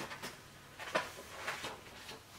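Pages of a paperback book being turned by hand: about three soft paper rustles, well under a second apart.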